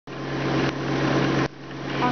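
Steady machine hum with a rushing noise, from the running conveyor of a metal detector and check weigher line. The noise drops out briefly near the end.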